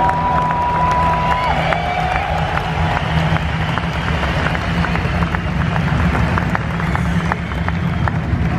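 Large arena concert crowd applauding and cheering, dense clapping throughout, with one long whistle that cuts off about a second and a half in.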